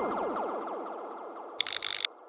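Tail of an electronic intro sting: a rapid stream of falling-pitch sweeps fading away, then a quick burst of a few sharp clicks near the end, like a camera-shutter sound effect.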